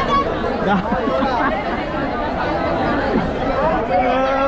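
Crowd of many people talking at once: a steady, dense chatter of overlapping voices, with no single voice standing out.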